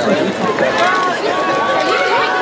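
Crowd chatter: many people talking at once close by, with no single voice standing out.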